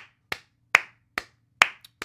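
One person clapping hands in a steady rhythm, about two and a half claps a second.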